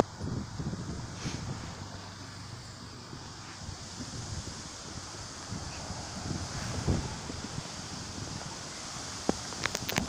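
Wind buffeting the microphone outdoors, with uneven low gusts over a steady rustle, a low thump about seven seconds in and a few sharp clicks near the end.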